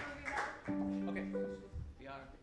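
A string instrument sounding a few held notes: two notes together for about half a second, then a short higher note, as a musician plays between songs.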